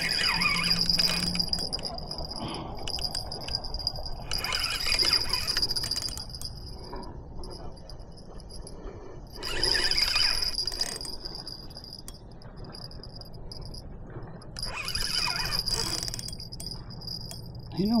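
Spinning reel cranked under a heavy load in four short bursts, each a high metallic whir of a second or two with pauses between.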